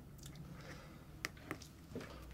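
Two faint, sharp clicks about a quarter second apart, a little past the middle, over quiet room tone.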